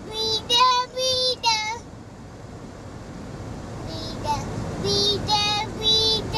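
Toddler's high-pitched sing-song vocalizing, a run of held, drawn-out notes in the first two seconds and again from about four seconds in, over the low rumble of a moving car.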